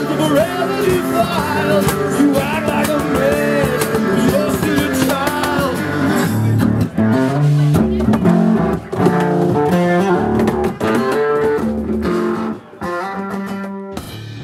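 Band music with a singer over guitar; the voice drops out about six seconds in and the guitar carries on with held notes.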